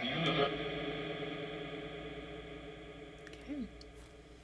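Phasma Box ITC app output: a steady drone of layered tones that slowly fades, with a brief rising-and-falling glide about three and a half seconds in. It is taken as a spirit answering "A few of them."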